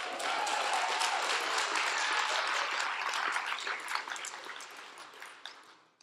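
Audience applauding, a dense patter of many hands clapping that holds steady and then dies away over the last couple of seconds.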